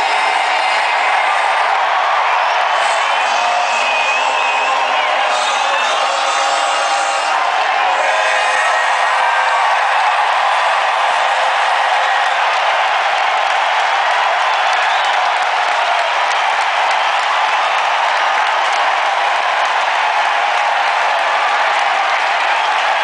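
A large stadium crowd cheering and whooping, a steady mass of voices with a few shrill whistles in the first several seconds.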